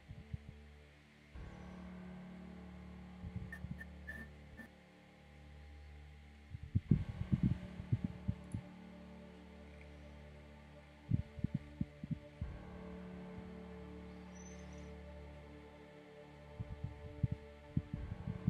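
Faint steady low drone that shifts in tone every few seconds, broken three times by short clusters of clicks or taps.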